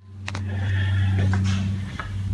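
A steady low hum that cuts in abruptly from silence, with a sharp click shortly after it starts.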